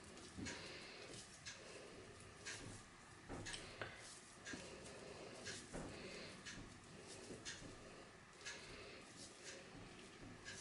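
Faint, irregular soft rustles and light taps of hands breaking off pieces of crumbly cake dough and dropping them onto sliced rhubarb in a baking tin.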